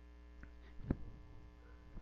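Faint steady mains hum, with a soft click just under a second in.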